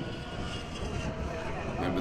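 Mk3 Mazda MX-5 race car's four-cylinder engine running at speed through a corner, a steady drone heard from trackside.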